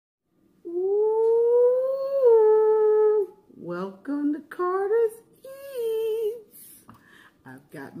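A woman humming one long held note that rises slowly and then steps down, followed by a few shorter vocal phrases that slide in pitch.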